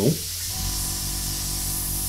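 Harder & Steenbeck Evolution ALplus airbrush spraying paint at lowered air pressure, a steady hiss of air. About half a second in, a low steady hum with a faint pulse joins it.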